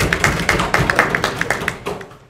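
A small audience clapping, with one person's hand claps close by and loudest, dying away just before the end.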